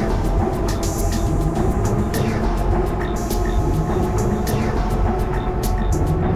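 Ambient electronic music built from treated field recordings such as the machinery of a mountain cable lift: a steady low mechanical rumble under held tones, with scattered clicks and a hissy high sweep that comes back about every two and a half seconds.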